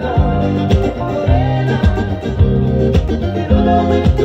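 Music: a solid-body electric guitar played over a backing track with bass notes and a steady beat.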